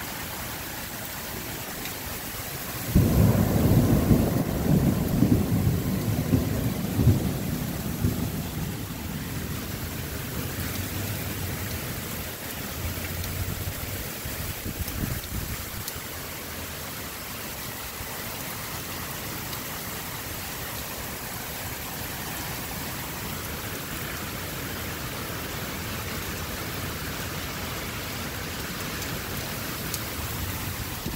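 Heavy rain pouring steadily. About three seconds in, a loud clap of thunder breaks and rumbles with crackles for several seconds, fading as the rain goes on.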